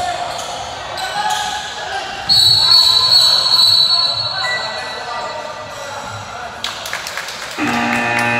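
A referee's whistle sounds one long high blast a couple of seconds in, the loudest sound here. Around it come voices and basketballs bouncing on the hardwood court, with a few sharp knocks near the end.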